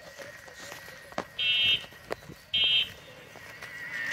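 Bell of a pedal cycle rickshaw rung in two short, rattling bursts about a second apart, with a few sharp clicks in between.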